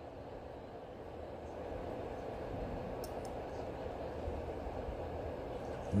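Low, even rumbling noise that swells slightly through the middle, with two faint ticks about three seconds in.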